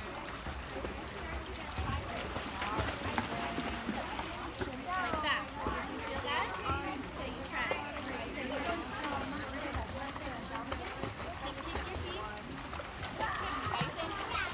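Pool water splashing as a young child kicks and paddles, with indistinct voices, a child's among them, on and off throughout.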